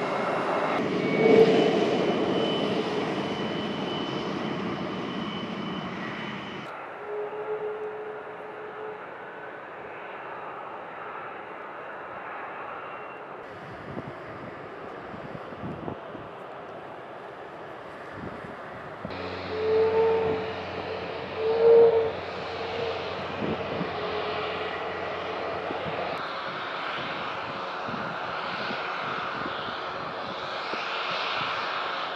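Jet engines of taxiing F-22 Raptor fighters: a steady rumble with a held whine, swelling loudly about a second and a half in and twice more about two-thirds of the way through. The sound changes abruptly several times as the shot cuts.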